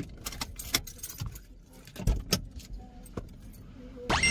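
Scattered light clicks and small knocks of someone handling things and moving about in the driver's seat of a parked car, with two sharper knocks, one about a second in and one a little past two seconds.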